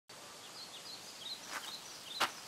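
Small birds chirping over a steady outdoor hiss: many short, high chirps, some rising and some falling. Near the end come a couple of soft thuds.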